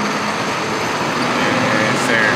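Flatbed tow truck driving slowly along the street with a car on its bed: steady engine and road noise with a low hum that rises slightly about a second in as it moves off.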